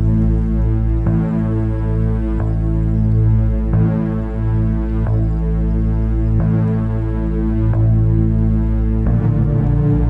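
Background music: a low, droning synthesizer chord with a throbbing pulse, shifting about every second and a third.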